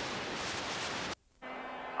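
Hiss of static from a damaged VHS tape recording. The static cuts off suddenly about a second in to a brief dropout, then returns quieter with a steady low hum.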